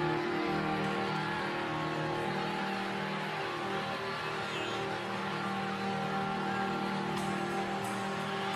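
A live band's sustained chord held steady from the stage, with no beat and no melody, over the murmur of a large outdoor crowd.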